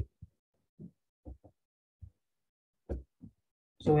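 About seven faint, short, low thumps at irregular intervals, with dead silence between them.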